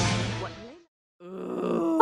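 The tail of a cartoon clip's soundtrack dies away, a brief gap of silence, then a person's drawn-out vocal reaction, an "ohh" that grows louder.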